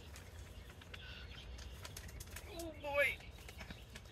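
Faint rustling and crinkling of a plastic bag of compressed potting mix as it is lifted, over a low steady hum. A short voice-like sound, falling in pitch, comes a little before three seconds in.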